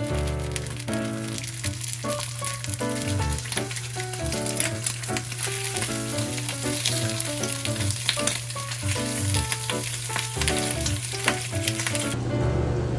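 Ham slices sizzling in a hot rectangular frying pan, with many scattered crackles and pops, under soft background music.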